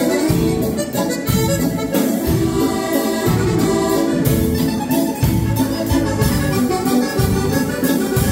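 Live ballo liscio dance band playing, an accordion carrying the melody over a steady drum beat.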